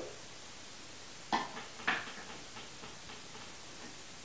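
The blender is switched off; two short knocks about half a second apart, a bit over a second in, as the Vitamix's plastic container and lid are handled.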